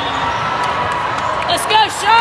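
Hall with many volleyball courts: a steady din of voices and crowd, with a ball striking the floor a few times, then brief high squeaks near the end, like sneakers on the court.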